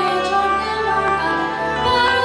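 A woman singing into a microphone over instrumental accompaniment.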